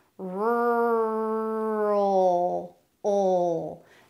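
A woman's voice holding a long, steady American 'rrr' sound that shifts into a dark L about two seconds in, then a second, shorter held sound: a pronunciation demonstration of the R running straight into the dark L of 'rural'.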